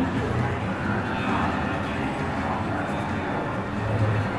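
Speedboat engines running at speed in a film's boat-chase soundtrack, a steady dense engine-and-spray noise, mixed with voices.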